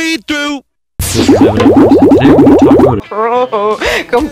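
A cartoon-style transition sound effect: a fast, warbling run of rising boings, about ten a second, over a low steady tone, lasting about two seconds. Brief bits of voice come just before and after it.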